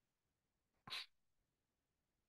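Near silence, broken about a second in by a single short breath sound from a man, such as a quick sniff or huff through the nose.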